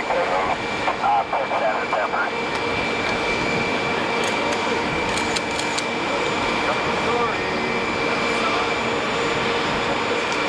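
Jet aircraft engines running steadily: a continuous rush with a constant high whine, under bits of conversation in the first couple of seconds.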